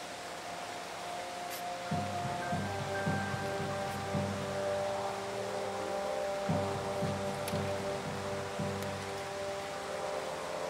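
Brass band playing a soft passage: held chords from the upper instruments, with the low brass coming in about two seconds in on a repeated rhythmic bass figure.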